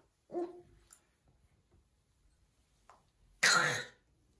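A baby's brief vocal grunt about a third of a second in, then a loud, breathy, cough-like sound lasting about half a second near the end.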